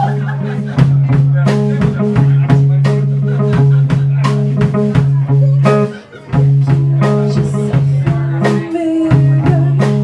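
Live rock band playing an instrumental passage: electric guitar holding low sustained notes over a steady drum-kit beat, with a short break about six seconds in before the band comes back in.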